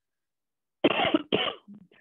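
A woman coughs twice in quick succession about a second in, two short, loud coughs.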